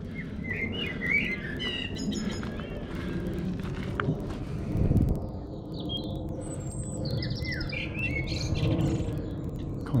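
Wild birds chirping and trilling in short scattered calls, over a steady low rumble that swells briefly about five seconds in.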